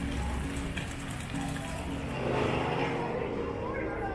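Music playing with a steady bass line, mixed with the voices of people talking nearby, which rise about halfway through.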